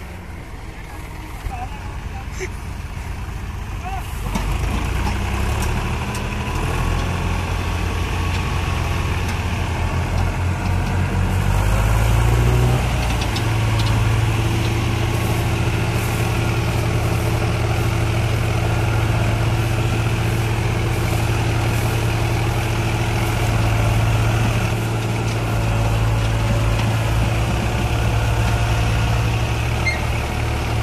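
HMT 3522 tractor's diesel engine working hard under heavy load as it pulls a fully loaded trolley. It gets louder about four seconds in, climbs in revs around twelve seconds in, then holds a steady, high-revving drone.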